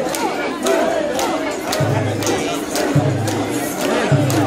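A dense crowd of mikoshi bearers shouting a rhythmic carrying chant together with crowd noise, with sharp shouts breaking through over and over. About halfway through, a low pulsing hum comes in under the voices.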